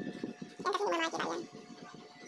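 Plastic container layers and lid handled, with light knocks and rattles, then a short wavering vocal sound lasting under a second about halfway through.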